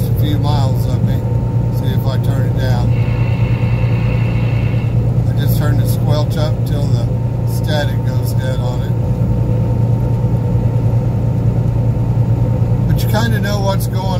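Semi truck's diesel engine and road noise heard inside the cab at highway speed: a steady low drone, with short bursts of talk coming and going over it.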